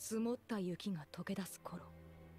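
Speech: a voice narrating in a foreign language for about a second and a half, then a low steady hum.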